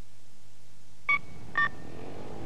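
Two short two-tone keypad beeps, about half a second apart, from a cash machine's keys being pressed.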